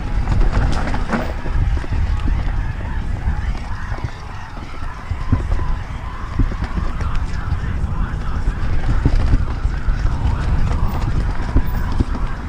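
Norco Aurum downhill mountain bike descending a rough trail at speed: wind buffeting the camera microphone as a steady rumble, with a continuous clatter of the bike's rattles, tyre strikes and knocks over rocks and roots, easing briefly around four seconds in.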